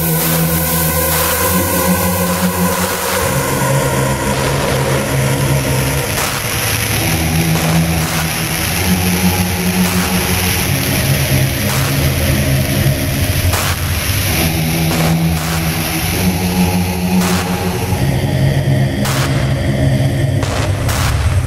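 Dark techno in a DJ mix, in a breakdown: the kick drum drops out at the start, leaving held bass-synth notes that shift every second or two over a deep rumble and a hissing high wash.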